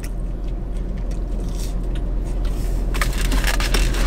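Close-up chewing of waffle fries, a dense soft crunching over a steady low hum. Near the end come sharper rustles and clicks as a paper food tray and a drink cup are handled.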